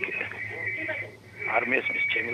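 A person's voice speaking quietly, getting clearer near the end, over a steady high-pitched whistle and a low hum.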